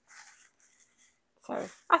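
The clear plastic shaker cover of a notepad, filled with loose sequins, being jiggled: a short, soft rustle in the first half second with a few faint ticks after it. A voice follows near the end.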